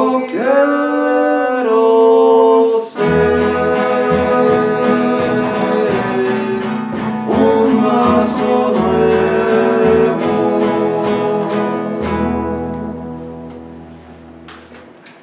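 Acoustic guitar strummed and upright double bass played with a singing voice. A long held sung note comes first, then steady strumming at about two strokes a second over deep bass notes. It ends on a final chord that fades away near the end.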